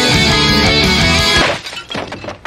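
Heavy rock music with electric guitar playing from a boombox, which cuts off suddenly about one and a half seconds in as the boombox is smashed, followed by a crash and sharp cracking breaks.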